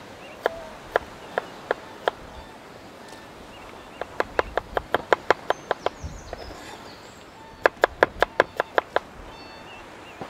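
Kitchen knife chopping garlic cloves on a wooden cutting board: sharp taps, a few spaced ones first, then two quick runs of about six taps a second, each lasting one to two seconds.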